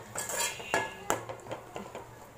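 A spoon stirring chopped broad beans in an aluminium kadai, scraping and clinking against the pan several times at an irregular pace.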